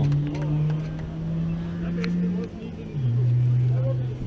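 A motor vehicle's engine running with a steady low hum that drops to a lower pitch about three seconds in.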